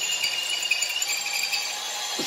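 Cordless drill spinning a cone-shaped chamfer tool against the edge of a hole in hardened steel. A steady high squeal rides over the grinding noise of the cut, which is taking quite a bit of pressure.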